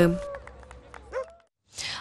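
Faint outdoor background with a single short, high, rising yelp about a second in, then a moment of dead silence at an edit.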